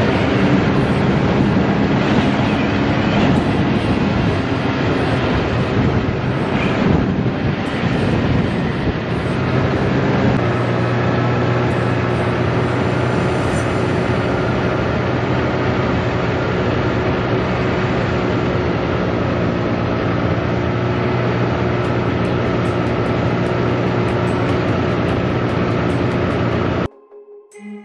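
Snowmobile engine running steadily while under way, over a dense rush of noise. Its note wavers briefly about seven seconds in, then holds steady.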